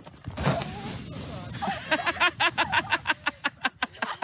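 A rush of noise as people slide over snow, followed by a person's voice in quick repeated pulses, about five or six a second, like laughing.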